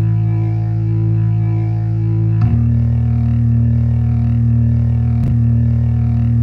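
Electronic dance music on synthesizers: a loud sustained bass drone with no beat, shifting to a new note about two and a half seconds in.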